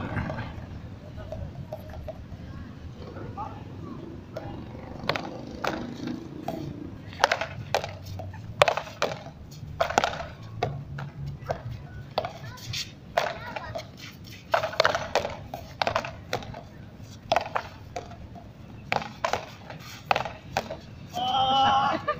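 Frontón rally: a ball struck by paddles and smacking off a concrete wall and court, a long series of sharp cracks, often two in quick succession. There are a few voices near the start and the end.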